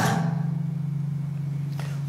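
A steady low hum during a pause in speech. The same hum runs on under the voice.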